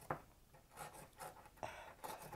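Small metal pick scraping at the plaster block of a mini gold dig kit: faint, short scratching strokes, several within two seconds.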